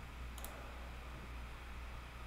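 A single computer mouse click about half a second in, over a faint steady low hum.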